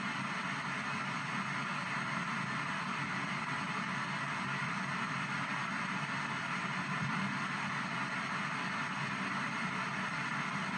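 P-SB7 ghost box radio sweeping down the FM band, putting out a steady hiss of static through its small speaker.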